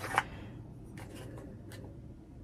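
Quiet handling of a small cardboard box as a nail polish bottle is slid out of it: soft rubbing and a few light ticks, with a short louder noise at the very start.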